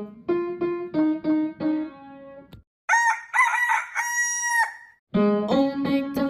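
A melody of single keyboard notes, then after a brief pause a rooster crowing, a cock-a-doodle-doo of about two seconds ending in a long held note. The keyboard melody starts again near the end.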